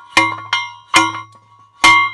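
Hand post driver (post rammer) slammed down onto a wooden stake, driving it into the ground. It gives heavy metallic clangs about a second apart, each ringing briefly like a bell, with a lighter knock between the first two.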